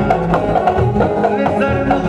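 Kurdish folk dance music for the halay: a melody line over a steady drum beat of about two strokes a second.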